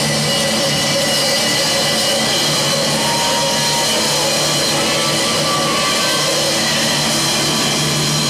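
A live band playing rock-style music with a drum kit, loud and continuous.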